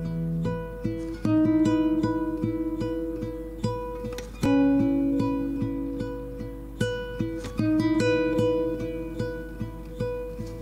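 Background music led by plucked guitar, with a new chord about every three seconds.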